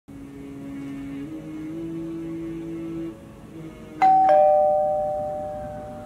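A two-tone doorbell chime, ding-dong, about four seconds in: a higher tone then a lower one, each ringing on and slowly dying away. Before it, a man's voice holds long, melodic notes in a chanted Quran recitation.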